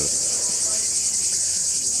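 Cicadas singing in one steady, high-pitched drone.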